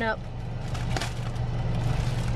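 Plastic poly mailer bag crinkling briefly as it is torn open by hand, a few crackles about a second in, over the car's steady low hum.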